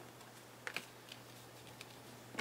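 Faint light taps and clicks of a handmade paper card being handled and set down on a craft mat: two close together a little over half a second in and one more near the end.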